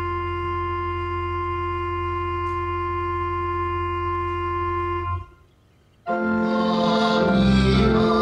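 Church organ holding the closing chord of a hymn introduction, with a deep pedal note underneath; it releases about five seconds in, and after a pause of about a second the organ starts the first verse, with the congregation joining in singing.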